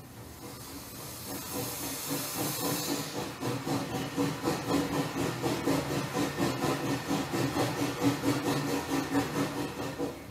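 Steam train sound: a high hiss of steam for the first few seconds, then a steady, rhythmic chugging of the train running.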